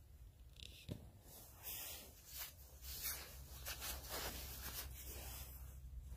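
Faint, irregular rustling and scratchy handling noises, with a soft knock about a second in, over a low steady rumble.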